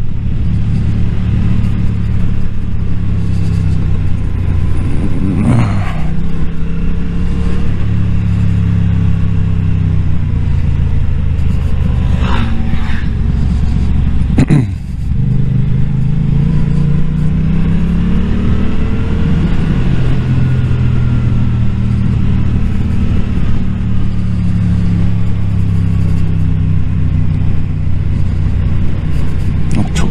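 Motorcycle engine running under way on the road, its pitch rising and falling several times as the throttle and revs change. About halfway through there is a short sharp click and a brief dip in the engine sound.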